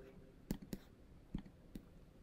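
Four short, faint clicks within about a second and a half, over quiet room tone.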